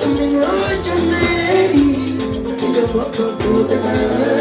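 Live band music: a male voice singing over a steady bass line and a fast, even high percussion pulse, with a final sung phrase "to me" near the end.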